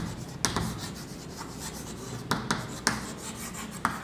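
Chalk writing on a blackboard: a soft scratchy rasp of the strokes, broken by several sharp taps as the chalk strikes the board.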